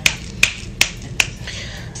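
A woman snapping her fingers repeatedly, about two and a half crisp snaps a second, while searching for a word; the snapping stops a little over a second in.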